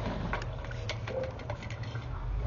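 A low steady mechanical hum with scattered light clicks and ticks.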